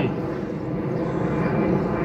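A steady, even engine-like rumble, with no clear strikes or changes.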